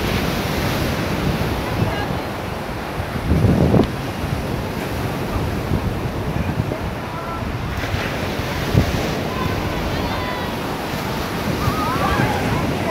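Wind buffeting the microphone over a steady wash of sea surf, with a stronger gust about three and a half seconds in.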